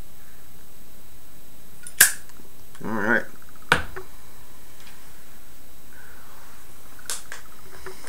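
Lighting a tobacco pipe: a sharp click of the lighter about two seconds in and a second sharp click just before four seconds, with a short wavering "mm" hum between them and a fainter click near the end.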